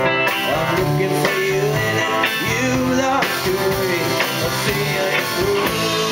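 Live rock band playing, electric and acoustic guitars over a drum kit, heard from the audience in a small club.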